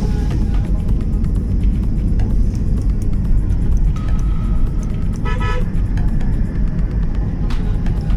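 Steady low rumble of a vehicle driving along a paved road, heard from on board. A horn sounds briefly a little past the middle.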